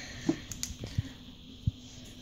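Light handling noise: a few scattered faint clicks and taps, the sharpest about a second in and again a little later, as a wrapped stock cube is turned in the fingers.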